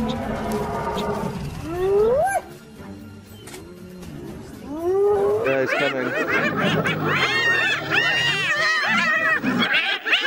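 Spotted hyenas calling: a rising whoop about two seconds in, then from about five seconds a dense chorus of high, rapid giggling calls, the sound of hyenas excited or stressed in a confrontation with lions.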